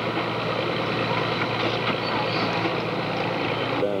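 Heavy excavator's diesel engine running steadily as its grapple works a pile of scrap steel, with a few faint knocks.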